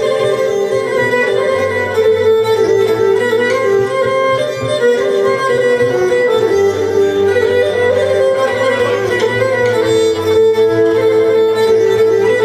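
Pontic lyra (kemenche), a small bowed three-string fiddle, playing a sustained, note-changing traditional melody, with guitar accompaniment underneath.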